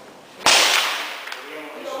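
A single shot from a Mauser 1909 infantry rifle, a 7.65×53mm bolt-action, about half a second in, echoing in the room and dying away over about a second.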